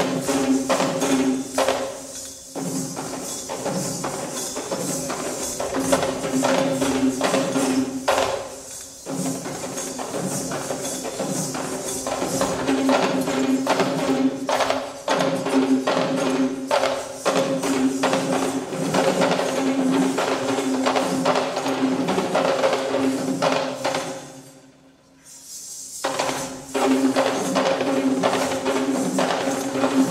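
Live Sri Lankan Kandyan dance music: drums beaten in a fast, driving rhythm with jingling metal percussion over a steady held tone. The music drops out briefly about five seconds before the end, then starts again.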